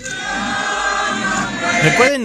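A large crowd singing together, many voices holding the notes of a hymn, starting abruptly.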